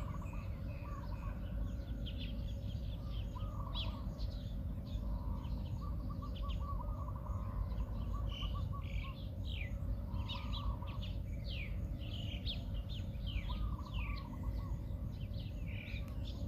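Several birds chirping throughout, with quick falling whistles and lower warbling calls, over a steady low rumble.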